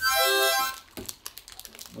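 A small harmonica blown, sounding one steady chord for just under a second before it stops.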